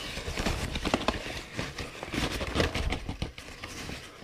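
Flour being scooped out of a plastic-lined bag with a measuring cup: a run of irregular light knocks, taps and crinkles from the cup and the plastic bag.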